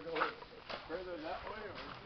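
Faint talk from a few people standing a little way off, with no engine running.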